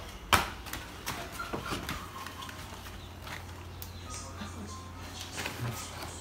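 Handling noise from cardboard egg crates being shifted in a plastic bin: a sharp knock about a third of a second in, then scattered lighter clicks and rustling, over a low steady hum.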